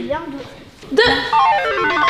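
An edited-in musical sound effect: a quick stepwise descending run of plucked, guitar-like notes, starting about a second in just after the number 'deux' is spoken.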